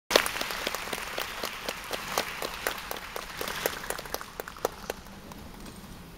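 Audience applauding, with individual claps standing out; the applause thins out and dies away about five seconds in.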